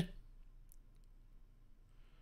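A few faint, short clicks over low room noise, with a soft hiss near the end.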